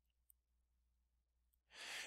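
Near silence, then a short intake of breath near the end, just before speech.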